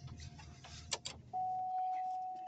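Inside a parked car: the engine hums at idle, two sharp clicks come about a second in, and then a steady electronic tone starts and holds as the engine hum dies away.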